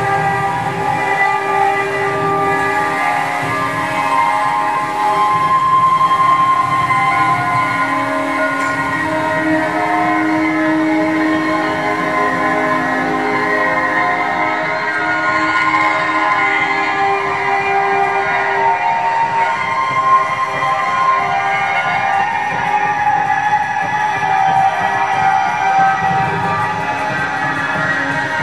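Experimental drone music: many sustained, overlapping horn-like tones that shift slowly in pitch, over a low rumble, at a steady loud level.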